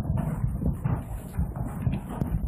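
Heavy rain pelting down: a dense, irregular patter of hits with strong low thudding.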